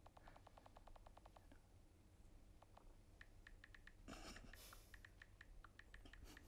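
Faint key clicks of a smartphone's on-screen keyboard as a message is typed: a quick even run of ticks at the start, then scattered single taps.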